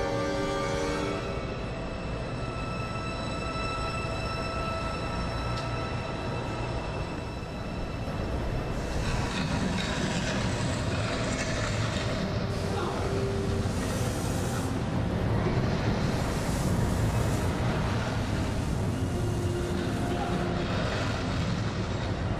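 Stunt-show sound effects: a continuous deep rumble that swells about nine seconds in, with two bursts of hiss a few seconds apart, under faint music. A sustained orchestral chord dies away in the first second or two.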